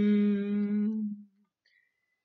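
A man humming one steady, held note as part of an a cappella vocal arrangement. It fades out a little over a second in.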